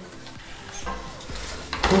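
Low, steady buzz of a handheld 3D pen's extruder motor feeding plastic filament, starting about a second in.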